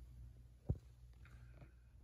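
Quiet room with a single brief, sharp tap a little past a third of the way through, and a faint soft hiss shortly after.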